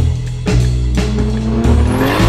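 Background music with a drum beat. About halfway through, a car engine rises in pitch as it revs, with a thin high whistle climbing alongside it. The engine is the S14's swapped Toyota 2JZ-GTE turbocharged inline-six.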